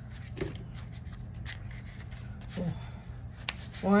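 Paper banknotes being handled and sorted by hand: a faint rustle of bills with a few soft clicks, over a low steady hum.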